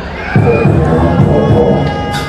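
Beatboxing through a PA system, a run of deep kick-drum beats made with the mouth starting about a third of a second in after a short lull, with a crowd cheering.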